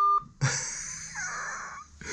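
A short electronic beep, then a man's long breathy sigh lasting about a second and a half.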